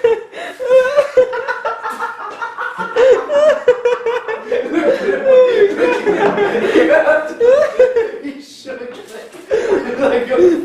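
People laughing and chuckling in repeated bursts, with a few half-spoken sounds mixed in.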